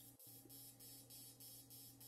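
Very faint, steady buzz of an AC TIG welding arc on aluminium, barely above near silence, with a brief dropout just after the start.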